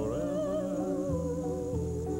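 A Hawaiian song: a long held vocal note that slides up into pitch and wavers with vibrato, over the band's accompaniment and its steady bass. A faint high-pitched whine runs underneath, from the VHS tape being too tight in its housing.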